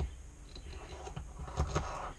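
Small hand-held rig parts clicking and scraping together as a slider car is fitted onto the rig's T-slot rail: a sharp click at the start, light scraping, then two louder clicks near the end.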